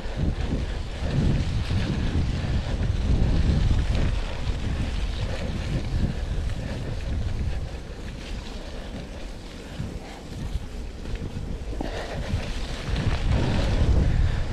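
Wind buffeting a chest-mounted action camera's microphone as a mountain bike rolls over rutted dirt, an uneven rumbling rush that rises and falls in gusts.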